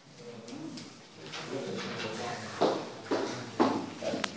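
Indistinct murmuring voices in a classroom, with three sharp bumps in the second half as the hidden phone is handled.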